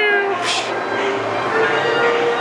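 A young man's voice sliding down in pitch, a mimicked drop, fading out a third of a second in; then background music with steady held notes.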